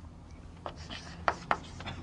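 Writing on a lecture-room board: a run of short, sharp strokes and taps over a low steady room hum, starting about half a second in.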